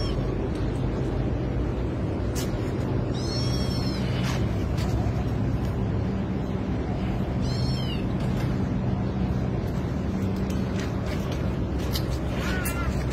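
Kitten mewing in short, high-pitched cries, twice, about three and a half and seven and a half seconds in: the distress cries of a trapped kitten being freed. A steady low hum runs underneath.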